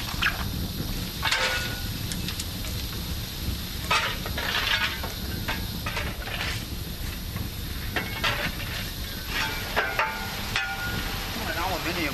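Coal being shovelled into a steam boiler's furnace: irregular shovel scrapes and clatters every second or two over the steady low rumble of the fire burning.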